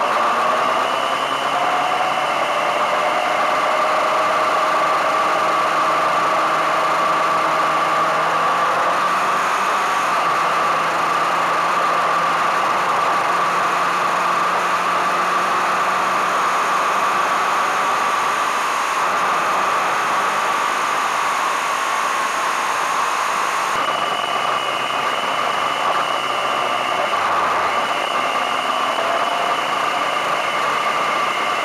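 Motorcycle engine running on the road under wind noise, its pitch rising and falling as the speed changes, with a steady high tone over it.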